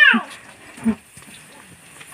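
A baby's cry ending in a high wail that falls steeply in pitch at the very start, then a short low whimper about a second in, with faint rustling of handling after.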